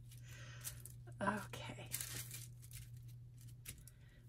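Flat paintbrush spreading Mod Podge over a papered board: soft, scratchy brush strokes on paper, with a short vocal sound about a second in.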